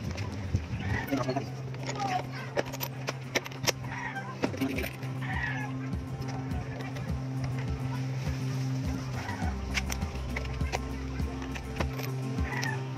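Light metal clicks and taps as a metal axle cap is handled and fitted onto a scooter's front axle nut, over a steady low hum that drops lower near the end.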